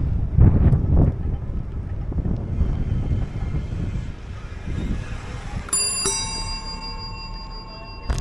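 Bicycle bell struck twice in quick succession about three-quarters of the way through, ringing on afterwards. Wind buffets the microphone throughout, loudest in the first second or so.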